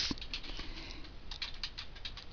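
Typing on a computer keyboard: a quick, faint run of key clicks, busier in the second half.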